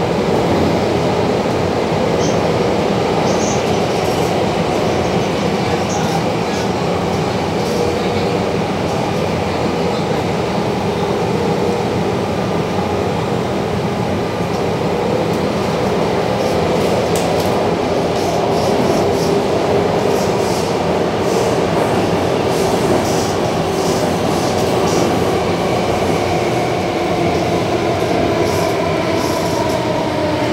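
Inside a moving SBS Transit C751C metro car: a steady rumble of wheels on rail and running noise with a faint motor whine. The whine falls in pitch near the end as the train slows, and light high clicks and squeaks come through in the second half.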